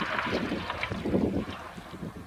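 Hatchback car driven hard on a gravel track: the engine revs in repeated surges over the crunch of tyres on gravel, with wind buffeting the microphone. The sound eases off near the end as the car moves away.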